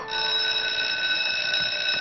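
School bell ringing with a steady, high tone, held evenly: the signal that lunch is over and class resumes.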